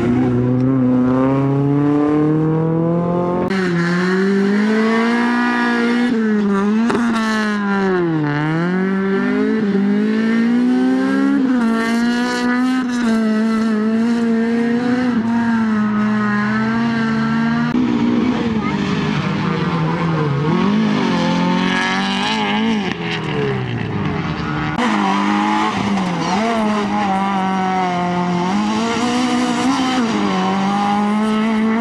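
Hatchback rally cars' engines revving hard through a tight section, each engine's pitch climbing and dropping repeatedly as the drivers accelerate, lift and change gear. The engine note changes abruptly three times as a different car takes over.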